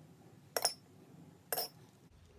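A metal spoon clinks twice against a small ceramic bowl while stirring, two short ringing clinks about a second apart.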